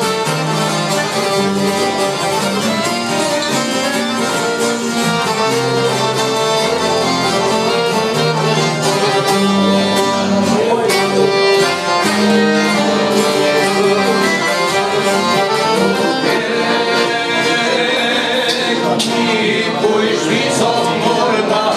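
Live Albanian folk music: an accordion leading over plucked long-necked lute and guitar, playing continuously with steady held notes.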